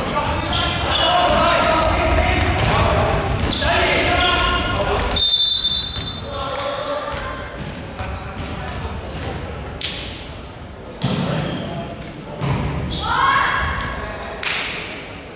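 Indoor basketball game in a large, echoing gym: a basketball bouncing on the hardwood court amid players' and onlookers' voices. A short, high whistle blast, typical of a referee stopping play, comes about five seconds in.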